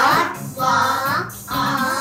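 A child's voice singing short-o phonics words such as 'rod', 'log', 'ox' and 'fox' over music, one word about every second.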